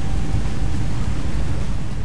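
Underwater noise of an offshore wind farm as picked up by a hydrophone: a loud, steady low rumble with a hiss over it.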